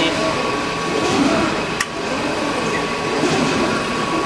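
Paper straw making machine running: a steady mechanical hum with a constant high tone, and one sharp click about two seconds in.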